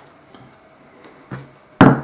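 Plastic-faced mallet striking a leather hole punch: after a quiet pause, a light tap about a second and a half in, then a sharp knock near the end.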